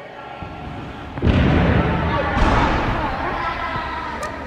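A child's cartwheel on a padded gymnastics floor mat: a sudden thump about a second in, then a second impact about halfway through, with a low rumble of the mat under her hands and feet.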